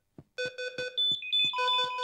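Patient monitor alarm beeping: steady electronic tones that shift to higher tones about a second in, with another lower tone joining. Under them runs a quick series of short low thumps.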